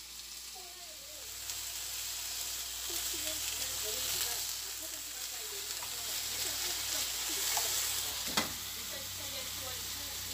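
Thin slices of pork belly frying in a nonstick pan: a steady sizzle that grows louder over the first second or so, with one sharp click about eight seconds in.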